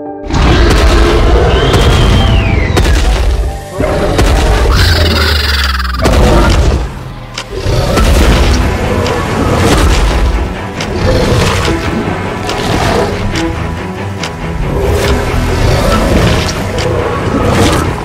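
Movie-style sound effects for a giant T-rex: repeated deep booming thuds from its footfalls, over dramatic music.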